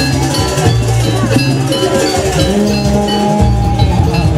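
Loud jaranan accompaniment music in the Javanese gamelan style: rapid, repeated metallic bell-like strikes and drumming over low, held notes.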